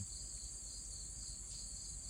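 Faint, steady outdoor insect chorus: a continuous high-pitched trilling that holds without a break.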